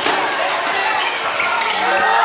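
Live sound of a basketball game in a packed gymnasium: crowd voices and shouts, with the sounds of the ball and play on the court.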